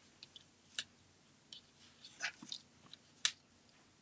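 Cardstock being handled and pressed down by fingers as a small die-cut paper piece on foam adhesive is set onto a card: a few faint, scattered clicks and taps of paper, the sharpest near the end.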